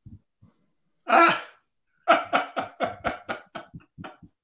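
A single cough about a second in, followed by a run of laughter in short, evenly spaced bursts.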